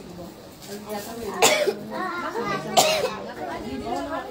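A person coughs twice, two short sharp coughs about a second and a half apart, over low voices in the room.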